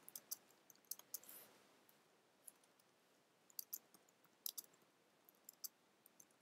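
Faint computer keyboard typing: scattered key clicks in small clusters, with a quiet gap of about a second in the middle.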